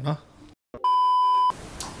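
A single steady 1 kHz bleep tone of under a second, the standard edited-in censor beep, about a second in, right after a brief dead silence.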